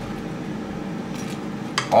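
Metal spoon scraping and clinking against a ceramic plate as chicken wings are turned in a sticky sauce, with a couple of sharp clicks in the second half.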